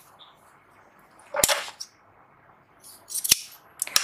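Three sharp snaps, about a second and a half in, past three seconds and just before the end, each with a short rustle: cotton fabric strips being handled and laid out on a tabletop.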